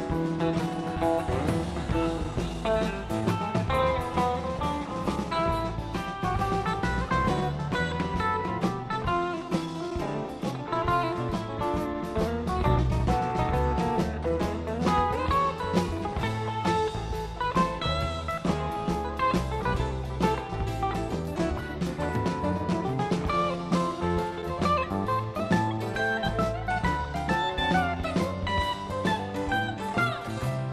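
Live rock band playing an instrumental break: an electric guitar plays a lead line over bass and drums.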